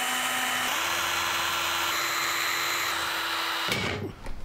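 Cordless drill running steadily as it bores a mounting hole into the hard case under the bracket plate. Its pitch steps up slightly under a second in, and it cuts off suddenly just before the end.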